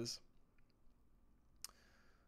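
Near silence: room tone after the last syllable of a spoken word, with one short, sharp click about one and a half seconds in.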